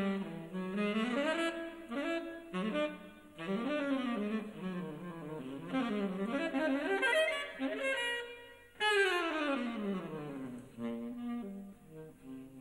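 Tenor saxophone playing a jazz solo in phrases of quick runs. About nine seconds in, a loud high note starts a long falling run into the low register.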